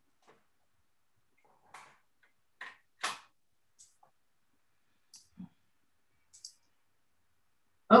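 A few faint, scattered clicks and small knocks, about eight in all, the loudest about three seconds in, with silence between them.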